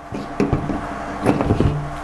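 Handling noise: a few short knocks and rustles as a deflated basketball is put down and a hand pump with its inflation needle is picked up.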